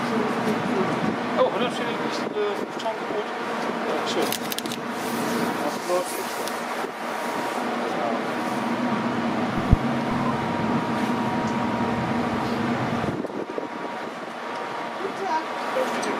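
Indistinct background chatter of people's voices over a steady machinery hum aboard a coastal passenger ship. The hum fades about thirteen seconds in, and there is a single short thump near the middle.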